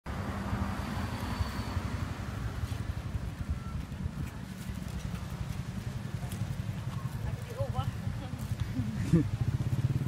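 Roadside street ambience with a low, steady vehicle engine rumble. A few voices and a short laugh come near the end.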